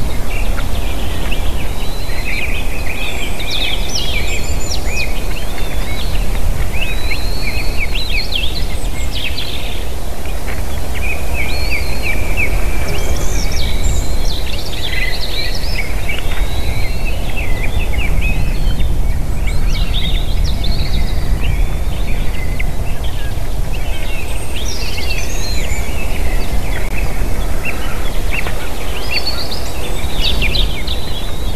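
Small songbirds singing in an overlapping chorus, many short chirping and trilling songs throughout, over a steady low rumble of wind noise on the microphone.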